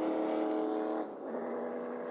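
NASCAR Xfinity stock cars' V8 engines running at a steady, slow caution pace, giving one even droning note. About a second in it drops a little in level, and the note changes slightly.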